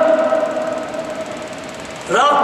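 A man's voice holding one long drawn-out vowel at a steady pitch, fading away in the second half.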